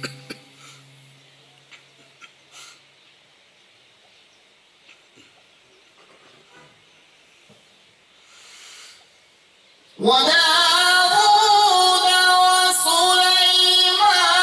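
Near quiet room noise with a few small clicks for about ten seconds. Then a man's melodic Quran recitation through a handheld microphone starts suddenly and loud, with long held, wavering notes in a high voice.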